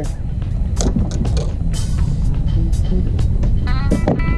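Wind buffeting the microphone, with scattered irregular knocks and clicks, under background music; a run of pitched notes comes in near the end.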